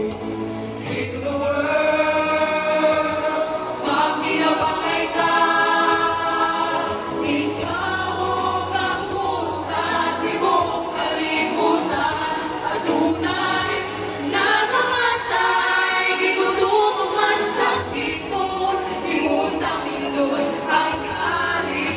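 A choir singing sacred music in long, held notes.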